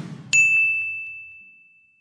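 A single bright bell-like ding, struck about a third of a second in and ringing on one clear high tone as it fades away over the next two seconds.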